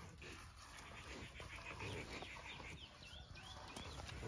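Faint outdoor ambience of small birds chirping in short repeated arching notes, mostly in the second half, over soft low animal sounds.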